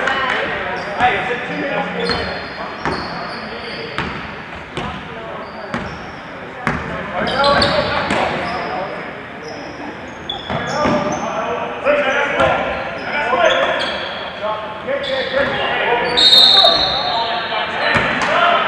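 A basketball bouncing on a hardwood court during play, in repeated sharp thuds at an uneven pace, with short high sneaker squeaks on the floor, strongest near the end, and shouting voices of players and crowd.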